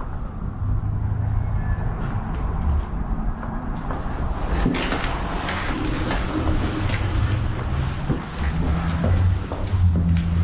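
Footsteps climbing a stairway, with handling noise from a hand-held camera: a low rumble runs under it all, and from about five seconds in come irregular knocks and rustling as the camera moves up the steps.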